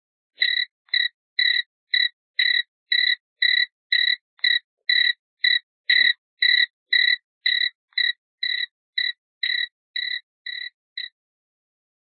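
A short pitched call repeated evenly about twice a second, some twenty times, growing slightly fainter near the end.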